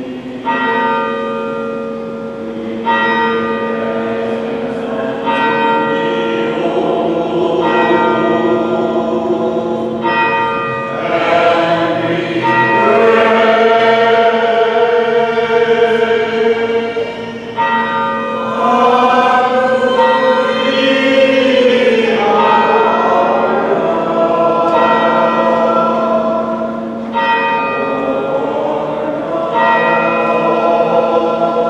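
A church bell struck about every two and a half seconds, its tone ringing on between strikes. Voices chant liturgical music over a low held drone note, and the chanting is fullest in the middle.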